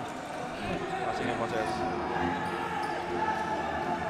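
A basketball bouncing on a hardwood court, with a steady background of voices in the arena.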